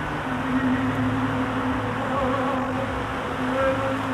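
Music from the Bellagio fountain show, a long held low note with fainter higher notes above it, over the steady noise of the fountain's water jets.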